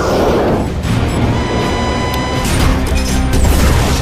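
Action film soundtrack: music over constant deep jet-engine noise, with a loud rushing blast in the first second and held steady tones about a third of the way in.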